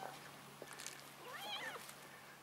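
A cat gives one short meow about one and a half seconds in, its pitch rising and then falling.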